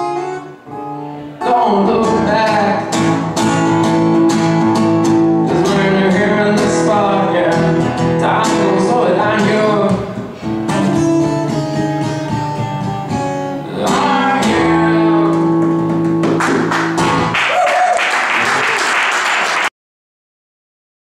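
A man singing to his own strummed acoustic guitar. Near the end the song stops, a couple of seconds of dense noisy clatter follows, and then the sound cuts off suddenly.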